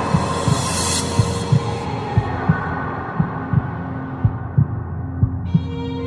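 Tense drama underscore built on a heartbeat-like double thump about once a second, over a high hiss that fades away during the first few seconds. A sustained synth chord comes in near the end.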